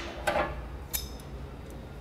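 Light ticks of a hand working around the steel frame of a brick-cutting saw, the clearest about a second in, over a steady low hum.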